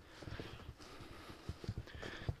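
Faint footsteps over grass and stony ground, with a few soft thuds in the second half.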